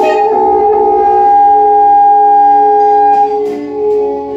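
Free improvisation on violin, alto saxophone and electric guitar laid flat on the lap, holding long overlapping notes. The highest held note stops a little after three seconds in, and new held notes take over.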